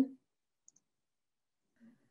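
Near silence, with the tail of a spoken word at the very start and a faint, high double click about two-thirds of a second in.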